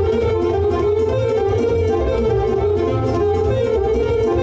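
Live instrumental music: a saxophone playing the melody over an arranger keyboard's accompaniment, with a steady bass and beat.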